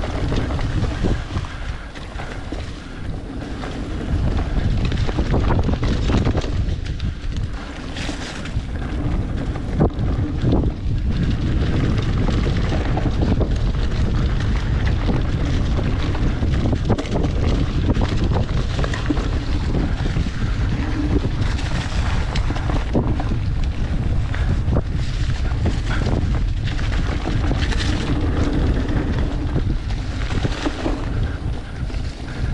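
Mountain bike riding down a rough dirt trail: wind buffeting the rider-mounted camera's microphone over the rumble of knobby tyres on dirt, with frequent clicks and rattles from the bike over bumps.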